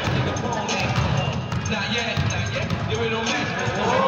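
Basketballs bouncing repeatedly on a gym floor, with players' voices in the big hall.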